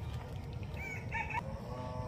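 A rooster crowing faintly, once, about halfway through.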